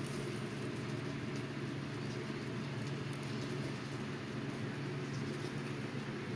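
A steady low hum of room background noise, with a few faint light rustles and ticks over it.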